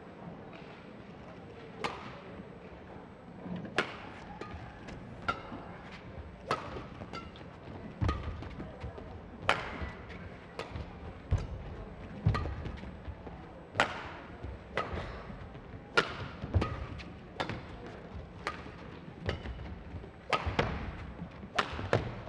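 Badminton rally: sharp racket strikes on a feather shuttlecock, about twenty shots roughly a second apart, starting with the serve about two seconds in. Deeper thuds from players' footwork come in between, over a steady arena hum.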